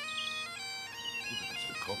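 Great Highland bagpipes playing: a steady drone under a chanter melody that steps between held notes.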